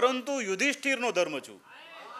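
A man's voice reciting a line of a Gujarati ghazal through a podium microphone, with strongly gliding pitch. It breaks off about one and a half seconds in, and a quieter murmur of several voices follows near the end.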